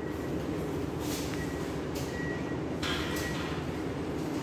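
Steady indoor room noise: a low, even hum with a faint high tone that comes and goes, and a few brief soft hisses.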